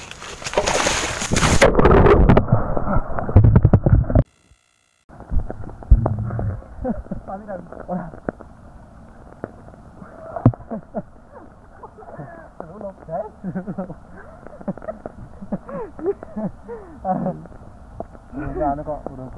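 A person slipping and falling into a knee-deep irrigation channel: a loud splash and churning of water for about four seconds. The sound then cuts out for about a second and comes back muffled, with water sloshing and a faint, indistinct voice.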